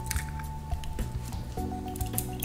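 Background music with quiet clicks and squishy handling sounds from a bottle of olive oil being opened and tipped over a frying pan.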